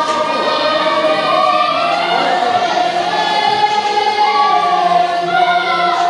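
Music: a choir singing long, held notes.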